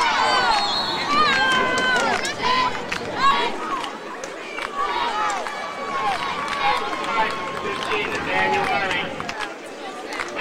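A small crowd of spectators shouting and cheering, several voices yelling over one another, loudest and highest-pitched in the first couple of seconds and then easing into scattered calls.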